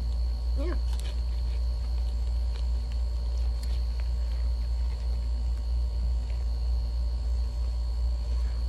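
A steady low hum, with faint crinkling and clicks of a paper towel being pulled away from food, and one short hummed voice sound under a second in.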